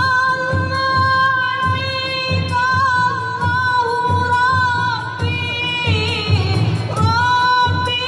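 A rebana ensemble: a woman's voice sings long, drawn-out notes that bend in pitch, over rebana frame drums beating a steady rhythm about twice a second. The singing pauses briefly about six seconds in, then resumes.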